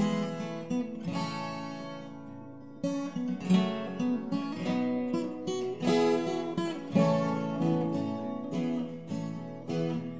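Solo acoustic guitar with a capo, playing an instrumental passage of chords and melody notes. About a second in, one chord is left to ring and fade, and the playing picks up again near three seconds.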